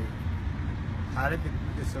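A voice speaking briefly over a steady low rumble.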